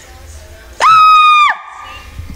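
A person's very loud, shrill scream, held at one steady high pitch for under a second. It starts about a second in and cuts off sharply.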